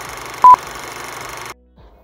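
Vintage film countdown leader sound effect: one short, loud, high beep about half a second in, over a steady film hiss that cuts off suddenly about one and a half seconds in.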